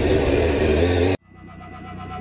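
Motorcycle riding noise, a low engine hum under wind rush, cuts off suddenly just over a second in. Outro music with held tones fades in after it.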